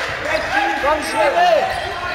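Sounds of an indoor football game in a sports hall: many short squeaks of shoes on the hall floor, with voices from players and onlookers, all echoing in the hall.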